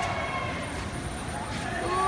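Steady street-traffic noise with faint voices in the background.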